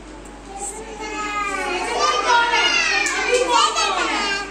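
A class of young children calling out together, many voices overlapping at once. The sound starts about a second in and grows louder toward the end.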